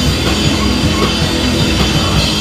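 Live rock band playing loudly on stage: two electric guitars, a bass guitar and a drum kit, steady and continuous.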